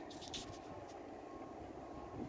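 Faint outdoor background noise: a steady low rumble with a thin, steady high tone.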